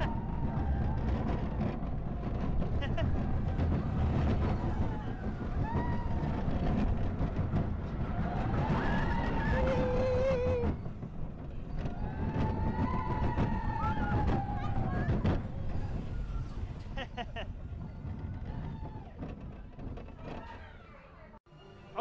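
Small children's roller coaster ride heard from a rider's seat: the train rumbles along the track with wind buffeting the clip-on microphone, and riders give high-pitched squeals and shouts of glee. The rumble is loudest for the first ten seconds or so, then fades as the train slows.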